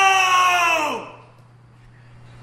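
A man's long, loud, high-pitched scream, held on one pitch and then sliding down in pitch as it dies away about a second in.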